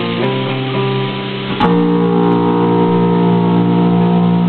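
Electric guitars playing chords in a band rehearsal, changing chords early on and then striking one chord about a second and a half in that is held ringing.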